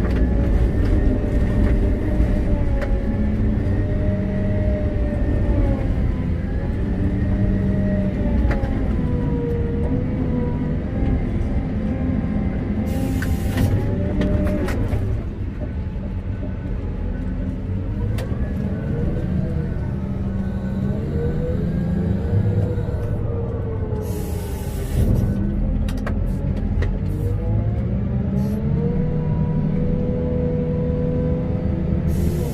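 Komatsu WA900 wheel loader heard from inside its cab: the diesel engine running under load with a whine that rises and falls as the boom and bucket are worked. Two short hissing bursts, near the middle and again a little after two-thirds of the way through.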